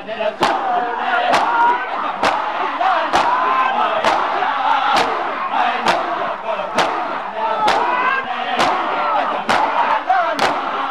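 A crowd of mourners beating their chests in unison (matam), about one sharp slap a second, over many men's voices chanting a noha.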